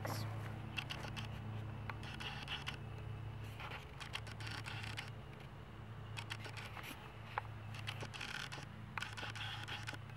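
Rustling and scraping handling noise from a handheld camera being carried and turned, in short irregular clusters, over a low steady hum.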